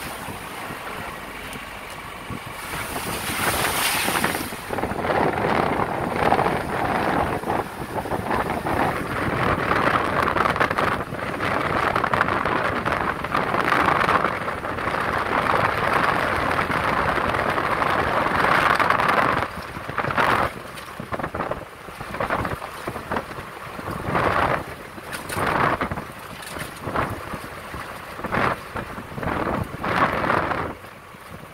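Wind buffeting the microphone at the open window of a moving vehicle, with the vehicle's road noise underneath. In the last third the wind comes in short, irregular surges.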